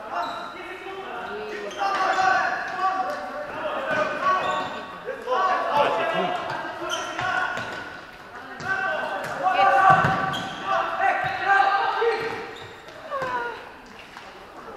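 Voices shouting and talking during an indoor futsal match, with sharp thuds of the ball being kicked and bouncing, all echoing in a large sports hall.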